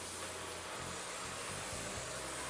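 Shark Rotator Lift-Away upright vacuum cleaner running on carpet: a steady, even rushing noise as it is pushed and swivelled.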